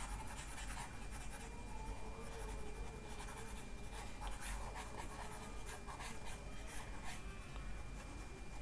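Faint scratching and light tapping of a stylus moving over a tablet's screen as handwritten notes are erased, over a faint steady high whine and low hum.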